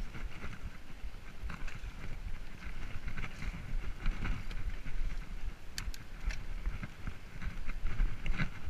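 Mountain bike rolling along a sandy dirt singletrack: tyre rumble and rattle of the bike, with wind buffeting the microphone. A few sharp clicks come about six seconds in.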